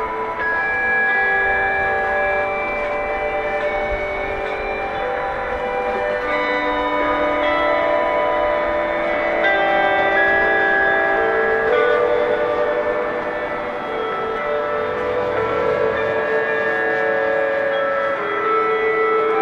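Dozens of electric guitars played together through small portable amplifiers, holding long, overlapping notes at many different pitches that change every second or two and build into a dense, layered cloud of sound.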